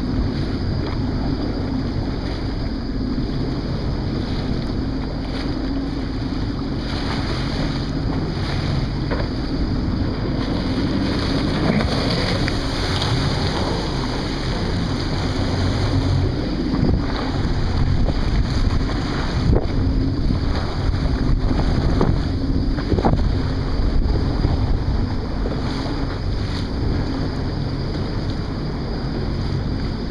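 Jet ski engine running steadily over rough, choppy water, with wind buffeting the microphone and water splashing. A few brief knocks sound around the middle.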